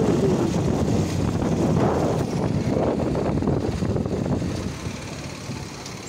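Wind buffeting the microphone over the rumble of a vehicle moving along the road, loud and steady, easing off over the last second or so.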